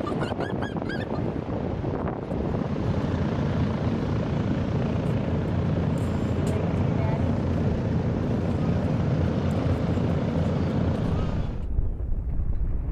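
Boeing B-29 Superfortress's four Wright R-3350 radial engines running as the bomber taxis: a loud, steady, deep drone of engines and propellers. The sound turns suddenly duller near the end.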